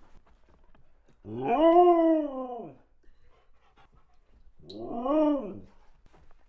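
A dog howling in two short calls, each rising and then falling in pitch. The first comes about a second in and is the longer; the second comes near the end.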